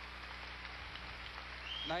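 Steady hiss of ice-arena ambience with a low hum underneath, as carried on an old television broadcast; a man's voice comes in at the very end.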